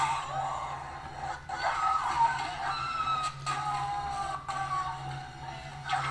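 Film soundtrack music played back over a loudspeaker system: held, slowly shifting high notes with a steady low hum beneath.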